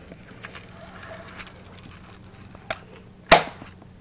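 Faint handling clicks over a low hum, then one sharp knock about three seconds in.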